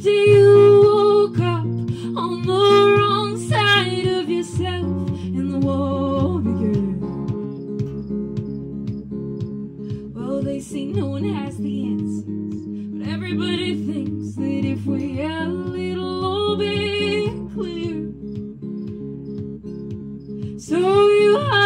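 A woman singing a slow folk song, accompanying herself on a hollow-body electric guitar; sung phrases come and go over steady sustained guitar chords.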